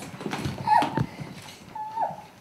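Short, high-pitched emotional squeals from children as they hug their father in a surprise homecoming, one about a second in and one near the end, with knocks and shuffling of bodies and clothing.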